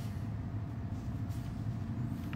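Steady low background rumble of room noise, with no speech.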